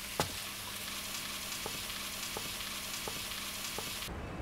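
Steady sizzling hiss of food frying in a kitchen, with a soft knock just after the start and a few soft footsteps about every 0.7 seconds.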